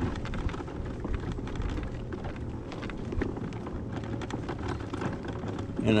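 Electric mobility scooter rolling along a rough asphalt street: a faint steady motor whine over a low hum and the fine crackle of small tyres on the pavement.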